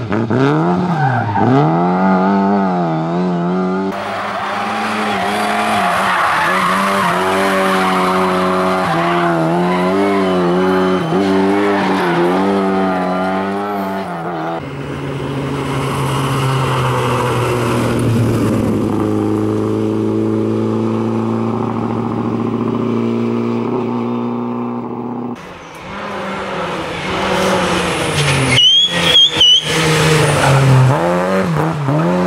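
Lada 2107 rally car's inline-four engine revving hard, its pitch swinging up and down through gear changes and lifts across several passes. Near the end there is a short, high tyre squeal.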